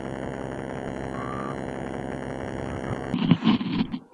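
Motorcycle engine idling with a steady hum. The hum cuts off abruptly a little after three seconds in and is followed by quieter, uneven sounds.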